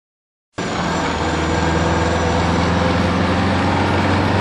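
Bus engine running steadily, cutting in suddenly about half a second in.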